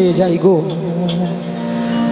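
A harmonium holding a steady chord under a male kirtan singer's voice. The voice finishes its phrase within the first second and the drone carries on alone.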